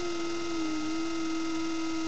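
Xun, the Chinese clay vessel flute, holding one long, pure, breathy-free note that sags slightly in pitch about half a second in and then stays steady.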